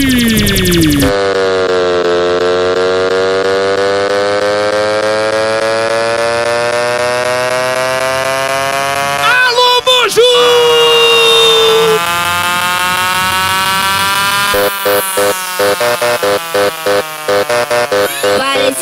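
Electronic dance-music intro of a DJ mix: a long synth riser slowly climbing in pitch, with a sharp effects hit about ten seconds in. Near the end the sound turns into a fast chopped stutter building toward the drop.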